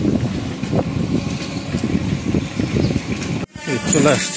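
Cycle rickshaw rolling along a street, a dense low rumble with constant loose rattling of its frame and chain. It cuts off abruptly near the end and a man's voice follows.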